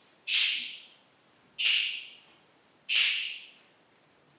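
Three evenly spaced 'pssh' snare hits made with the mouth, a beatboxed beat counting in a rap. Each one starts sharply and fades over about half a second.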